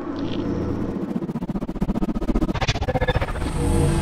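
Logo-reveal sound effect: a low rumble with a fast flutter that builds steadily louder.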